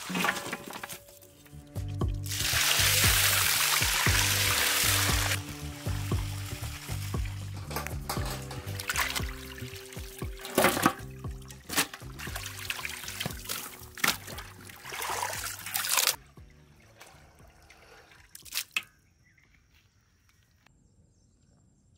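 Water poured into a large steel pot of raw chicken pieces for a few seconds, then hands squeezing and sloshing the chicken to wash it, with splashing and water dripping back into the pot, over background music.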